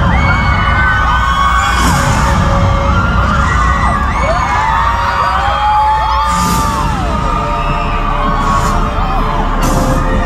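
Loud concert music through an arena sound system, with a heavy bass and a few sharp hits, and a crowd of fans screaming over it in rising and falling cries.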